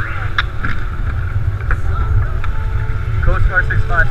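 Wind buffeting the microphone on open, choppy water: a steady, loud low rumble. A voice starts near the end.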